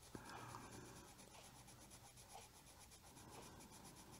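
Faint, steady scratching of a colored pencil shading on paper over a marker base.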